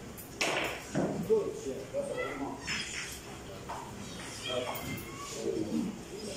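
Indistinct voices in a large room: several short calls that rise and fall in pitch over steady background noise.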